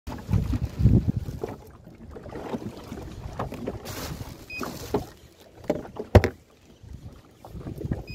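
Wind buffeting the phone microphone, with rubbing and knocking handling noise while an angler fights a fish on a spinning rod and reel. There is a heavy rumble in the first second and one sharp knock about six seconds in.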